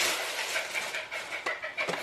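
Close rustling and handling noise with scattered clicks and knocks as items are moved about right next to the microphone.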